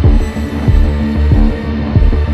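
Dark film-score music: a low, steady drone with a deep pulsing beat, roughly two to three pulses a second.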